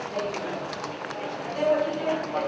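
Indistinct conversation among a group of people walking, with footsteps on a hard tiled floor.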